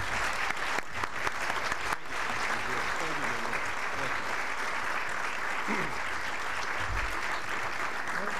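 Audience applauding steadily, welcoming a speaker to the podium, with a few faint voices underneath.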